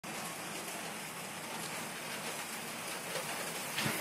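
Steady, even hiss like rain falling, with a brief louder sound just before the end.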